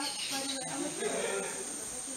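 People talking off-mic in conversation, over a thin, steady, high-pitched insect drone that runs without a break.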